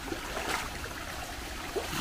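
A shallow stream flowing over rocks, a steady rush of running water.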